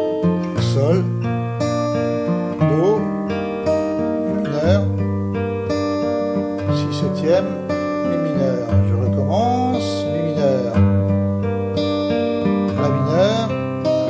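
Acoustic guitar fingerpicked in slow three-beat waltz arpeggios, the notes left ringing over each other, with the bass note changing every few seconds as the chords move.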